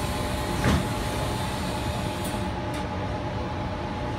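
Steady hum and rumble inside a Sydney Trains Tangara carriage, with a faint steady tone over it and a single sharp knock just under a second in.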